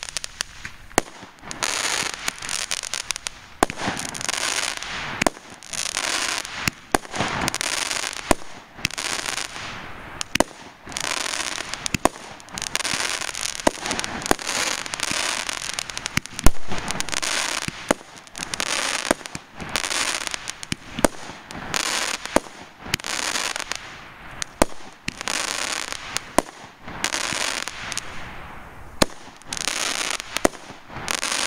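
Consumer fireworks going off in quick succession: sharp bangs and pops mixed with hissing bursts, the loudest bang about halfway through.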